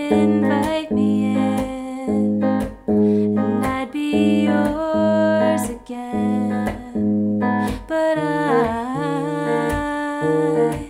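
Clean electric guitar played with a capo on the third fret and fingerpicked in arpeggios: a bass note, then the top three strings plucked together. It moves through the F and F minor chord shapes of the pre-chorus and into the chorus's Cmaj7 near the end.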